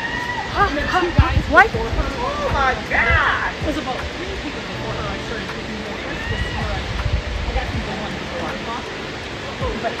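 Excited voices calling out in rising and falling cries during the first few seconds, with quieter voices after, over a steady rush of falling water from a waterfall.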